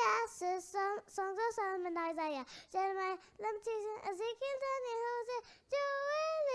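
A young girl singing solo and unaccompanied, in short phrases with brief pauses for breath between them.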